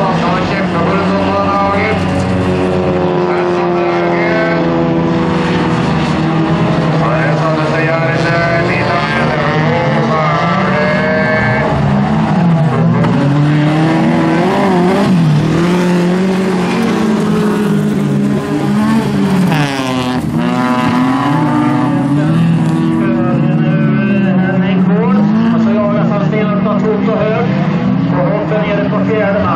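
Several bilcross race cars' engines revving hard as they race past, their notes climbing and dropping over and over as the drivers accelerate and lift through the corners.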